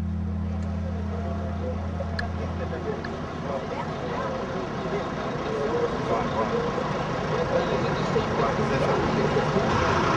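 Outdoor street ambience: traffic noise with a crowd of people talking, growing busier toward the end. A low sustained music tone fades out about three seconds in.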